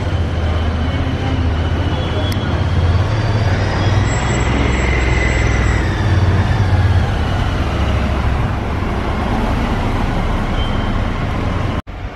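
City street traffic: cars and a trolley passing slowly, with a steady low engine rumble under the general road noise and a faint whine that rises and falls about four seconds in.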